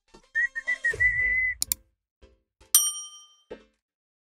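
A short, high whistled tone that wavers and then holds steady, then two quick clicks and a single bright ding that rings out. These are the sound effects of an on-screen subscribe-button animation with a notification bell.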